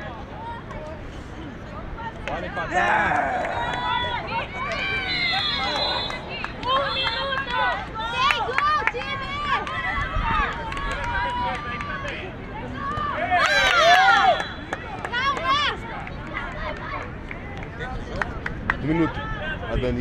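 Women's voices shouting and calling out during play, many short high-pitched calls overlapping one another, with the loudest burst of yelling about 13 to 14 seconds in.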